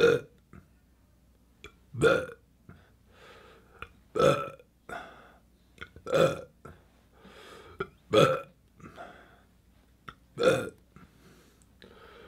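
A man belching over and over, six loud, short burps about two seconds apart, with fainter breathy sounds between them.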